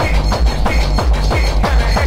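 Early rave dance music mixed from vinyl records on turntables, with a fast, heavy, regular beat.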